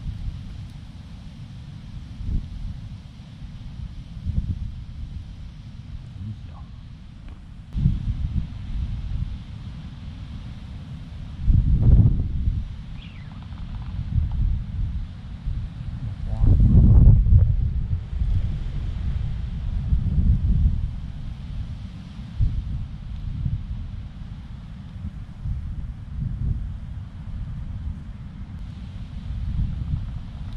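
Wind buffeting the microphone, a low uneven rumble that swells in gusts, with the strongest gusts about twelve and seventeen seconds in.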